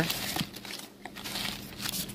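Crumpled packing paper rustling and crinkling as a hand pushes it aside in a styrofoam-lined shipping box, in irregular bursts.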